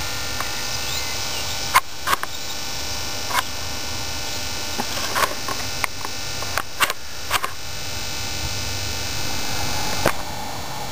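Steady background hiss, broken by a few scattered light clicks and knocks from a handheld camera being moved and refocused.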